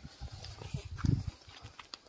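Rummaging through a car's boot: irregular soft thumps and shuffling as things are shifted about, the loudest about a second in, with a few light clicks.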